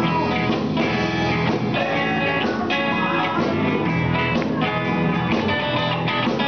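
Live band playing an amplified blues number on electric guitars and bass guitar.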